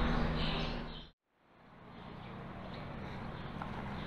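Ambience under the ship's shelter: a steady hum with faint high chirping. It fades to a brief silence at a cut about a second in, then a quieter, steady outdoor hiss fades up.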